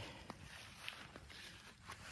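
Faint footsteps through grass, a few soft irregular steps.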